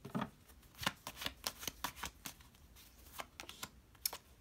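A tarot deck being shuffled and handled by hand: a run of light, quick card flicks and taps.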